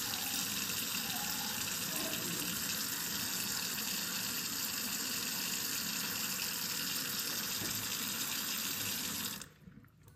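Kitchen mixer tap running steadily into a sink, then shut off abruptly about nine and a half seconds in.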